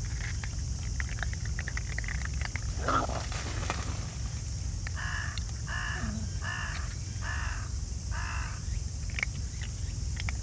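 A crow cawing five times in an even series, starting about halfway through, over a scatter of small clicks from raccoon dog cubs crunching dry food.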